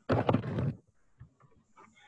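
A short, loud vocal sound from a man, under a second long, near the start, followed by faint small sounds.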